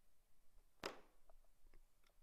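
Near silence with a single sharp computer-mouse click about a second in, followed by a few faint ticks.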